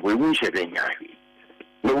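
Faint, steady electrical hum, heard in a pause between a man's words and sitting under his speech.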